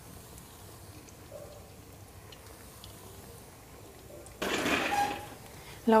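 Rice-flour nacho chips frying in hot oil in a kadai, a faint steady sizzle. About four seconds in, a louder hiss rises for about a second and fades as the frying chips are handled.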